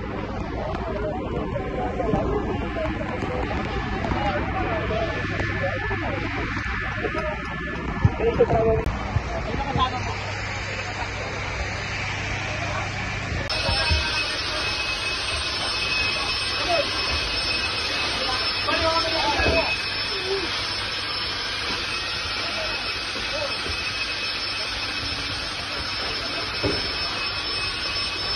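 Fireground noise: a fire engine's motor runs with a steady low drone under voices in the street. About halfway through the sound changes abruptly to a steady hiss inside the burning building, with a thin, steady high-pitched whine over it.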